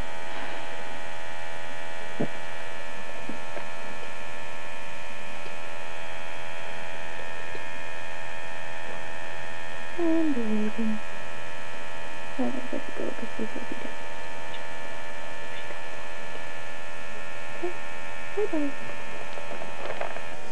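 Small electric air pump running steadily as it inflates an air mattress: a constant motor hum that holds the same pitch throughout.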